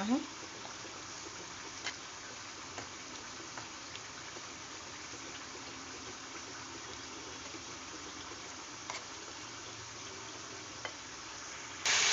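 A spoon stirring besan (gram flour) batter in a glass bowl: a faint, steady background hiss with a few soft, scattered clicks of the spoon against the bowl. Near the end it cuts abruptly to loud sizzling of masala frying in a pan.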